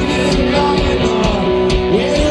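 Live rock band playing in a stadium, with guitar prominent over a steady full low end, recorded from the crowd on a phone.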